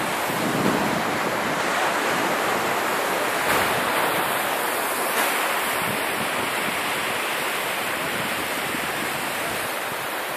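Sea surf washing up the beach, a steady rush of breaking waves, with wind buffeting the phone's microphone.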